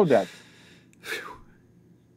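A man's voice ends a spoken question, followed by two short breathy sounds, an audible breath and then a brief soft laugh.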